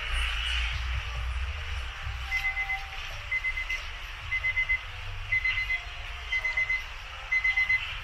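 An electronic alarm beeping in a high, even tone, starting about two seconds in: a quick burst of about four short beeps, repeated roughly once a second.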